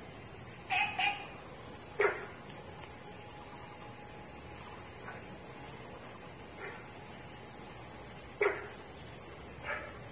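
Olive frogs and Günther's frogs calling: about six short, scattered barking calls, the loudest about two seconds in and again near the end, over a steady high hiss.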